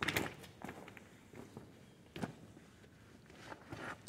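Footsteps on loose gravel: a few soft, irregularly spaced crunches.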